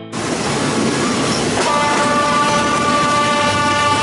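Train running noise heard from a carriage window, then about one and a half seconds in the locomotive's horn sounds one long, steady blast of several notes together. It is a warning to road traffic at level crossings whose barriers are not working.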